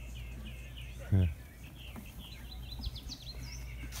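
Small birds chirping and twittering in short calls, with a few quick rising whistles near the end.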